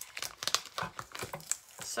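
Clear plastic transfer tape being peeled back off vinyl lettering and bunched in the hand, in a run of irregular small crackles.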